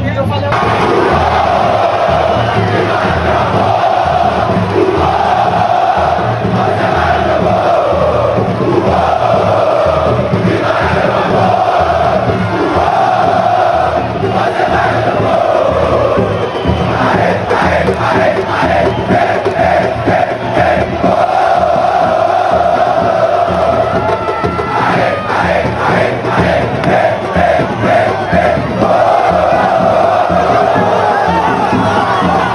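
Football stadium crowd singing a chant together in long sustained notes. Later it breaks into quicker rhythmic chanted syllables over a steady low beat.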